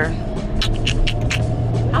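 Steady low hum of a car's engine heard inside the cabin, with a few short clicks in the first half.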